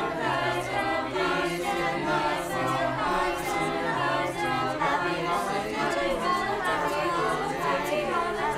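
A high school choir of young voices singing a cappella in harmony.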